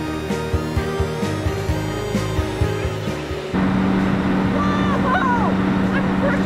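Background music with plucked guitar and light percussion stops suddenly about three and a half seconds in. It gives way to the steady low hum of a Caterpillar 315C excavator's diesel engine running, with a few short high sliding squeaks over it.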